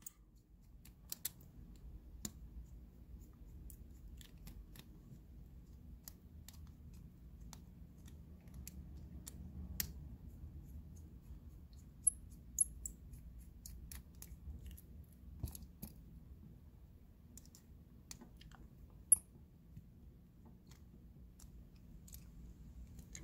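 Small, irregular metal clicks and scrapes of a precision screwdriver working at the brass cylinder of a Yale Y90S padlock as it is taken apart, with a low steady rumble underneath. Two sharper ticks stand out, one about halfway through and one near the end.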